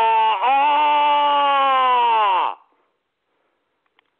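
A man's voice holding a long drawn-out sung or moaned note, broken once briefly and then held again. The pitch slides down as it fades out about two and a half seconds in.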